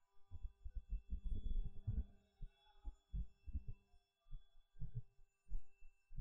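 Irregular low, dull thumps and knocks, densest in the first two seconds and then in short clusters, with a faint steady electrical hum under them. They are typical of a stylus tapping and writing on a drawing tablet, the knocks carried through the desk into the microphone.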